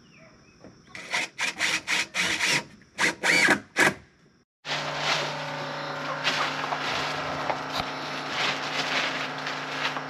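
Cordless drill running in about six short bursts over the first few seconds, one winding up and down in pitch. After a break, potting soil pours steadily from a bag into a plastic barrel bed, with a faint hum underneath.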